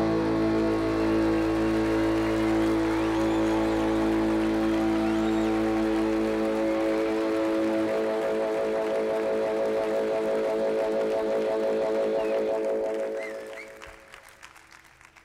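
Live rock band holding its closing chord, which rings out over the audience's applause and dies away near the end.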